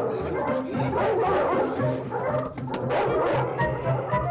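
Background music with a dog barking over it.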